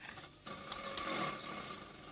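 A mechanical whirring with a couple of sharp clicks, starting about half a second in and slowly fading.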